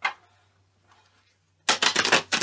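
A tarot deck being shuffled by hand: a rapid, dense run of card clicks starting near the end, after a brief soft sound at the very start.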